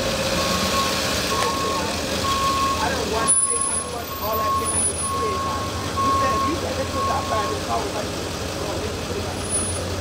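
Ambulance backup alarm beeping steadily, about one beep every 0.8 s, stopping about eight seconds in, over the vehicle's idling engine. People's voices are heard around it.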